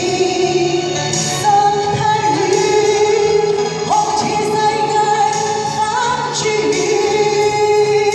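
A woman singing a ballad into a handheld microphone, amplified through a small portable speaker over a recorded backing track, holding long notes with vibrato.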